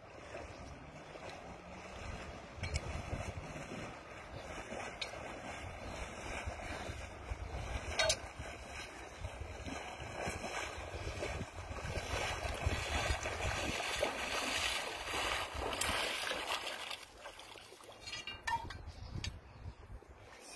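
Water swishing and splashing as a person wades through shallow river water, getting louder as he comes closer, with wind rumbling on the microphone.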